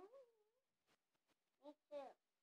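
Near silence, apart from the fading tail of a high, gliding vocal call at the start and two short, faint calls near the end.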